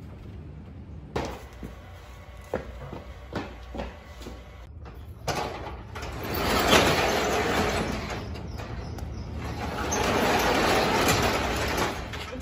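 A few sharp knocks, then a metal sectional garage door rattling and rumbling as it is worked, in one long stretch from about five seconds in and another near the end.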